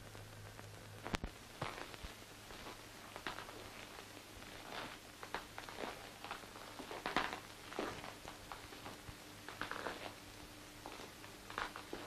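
Quiet, irregular footsteps and small knocks on a floor, over a steady low hum.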